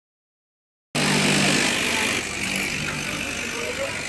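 Electric straight-knife fabric cutting machine running, its motor humming steadily while the upright blade cuts through a stack of layered cloth. The sound starts suddenly about a second in and eases slightly after two seconds.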